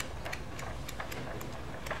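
Sheets of animation drawing paper flipped through by hand in quick succession: a run of light paper flicks, about four or five a second.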